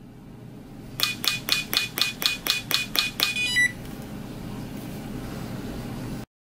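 An Implantest implant-stability meter's probe tapping a fixture mount on a dental implant to take a stability reading. About ten quick taps come at roughly four a second, with a thin steady tone under them, followed by a short beep.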